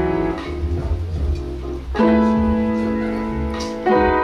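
Upright piano played slowly in sustained chords, softer in the first half, with a new chord struck firmly about halfway through and another just before the end.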